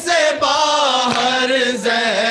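A group of men chanting a noha, a Shia mourning lament, in unison into a microphone in long held notes. Sharp beats about every three-quarters of a second mark the rhythm: hands striking the chest in matam.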